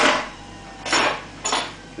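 A knife clattering and scraping in a juice jug as juice is stirred: three short clatters, the first the loudest.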